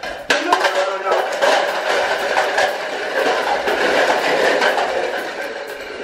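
A tall tower of stacked red plastic party cups collapsing: dozens of light plastic cups clattering down onto the floor in a dense rush that dies away near the end.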